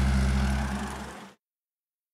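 Vehicle engine running steadily with road noise, fading out over about a second and then cutting to silence.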